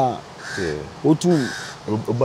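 A crow cawing twice, two harsh calls about a second apart, over a man's voice.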